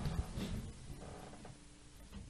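Quiet room tone: a faint low rumble and a few soft clicks early on, fading almost to silence.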